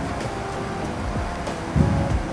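Steady room noise, with a short low thump near the end from a corded handheld microphone being handled as it is raised to speak.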